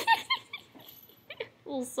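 A person laughing at the start, then speaking near the end.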